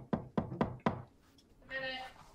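Five sharp knocks or thumps in quick succession, about four a second, followed near the end by a short pitched vocal sound such as a groan.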